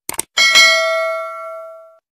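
Two quick mouse-click sound effects, then a notification-bell chime sound effect struck about half a second in. It rings with several tones and fades out over about a second and a half.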